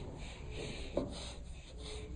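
Paper blending stump (tortillon) rubbing charcoal into drawing paper in short repeated strokes, about three or four a second, with a slightly louder scrape about a second in.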